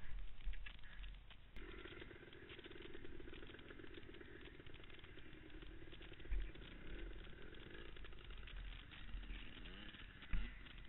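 ATV engine running faintly and steadily at low revs. A sharp click about one and a half seconds in, then an even engine note that hardly changes in pitch.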